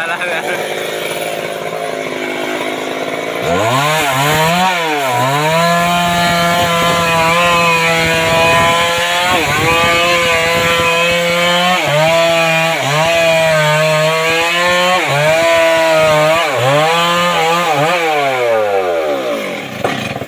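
A Stihl MS 382 two-stroke chainsaw cutting through a mahogany log. It runs lower at first, then about three and a half seconds in revs up into the cut, its engine speed dipping and recovering several times under load. The revs drop away near the end.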